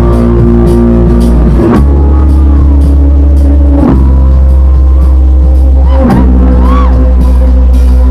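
Live band with electric guitar and drum kit playing an instrumental passage of a dance song, loud and heavy in the bass. The chords change about every two seconds over a steady beat.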